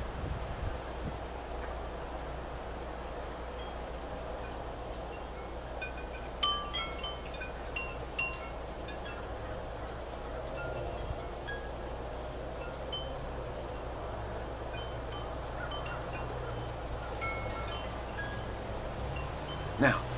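Wind chimes ringing now and then in light, scattered tones, thickest around six to eight seconds in, over a steady low background of wind and hum.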